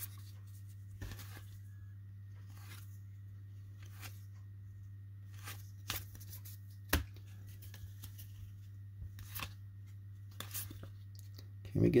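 Baseball trading cards being flipped one at a time off a stack by hand: light scattered slides and flicks of card stock, one sharper snap about seven seconds in, over a steady low hum.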